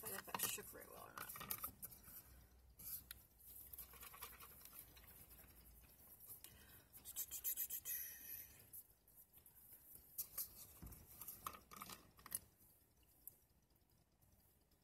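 Faint clicks and scratching from handling a glass bottle of iced latte and its cap, with a longer rasping stretch about seven seconds in and a few sharper clicks a few seconds later.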